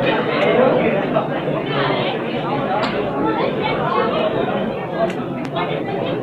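Crowd of spectators chattering, many voices overlapping, with a few brief sharp clicks.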